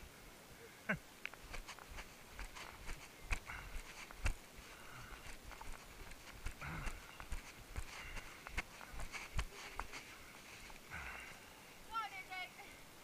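Footsteps of runners stepping through a tyre obstacle and onto leaf-covered ground, heard as irregular thumps and clicks along with the jostling of a body-worn camera.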